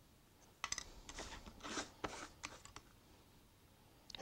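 Hobby knife blade scraping and clicking on a thin plastic model part against a pine board: a few faint clicks, then several short cutting strokes that stop about three seconds in. He is working through the tough top cut.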